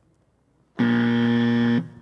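Quiz timer buzzer sounding once: a steady, low buzz lasting about a second that cuts off sharply, signalling that time is up for the question.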